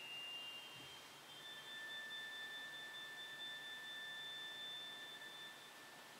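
Pipe organ holding the last notes of its prelude: a few soft, high, pure tones sustained together, which die away near the end.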